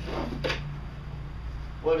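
A man's voice hesitating mid-sentence, a brief sound near the start and the word "what" at the end, over a steady low background hum.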